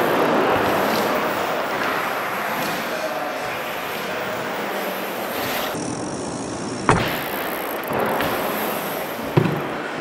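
Mini BMX tyres rolling across a skatepark bowl, a steady rush, with a sharp thud about seven seconds in as the bike lands, and a smaller knock near the end.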